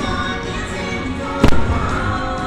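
Fireworks show music playing, with one sharp firework bang about one and a half seconds in.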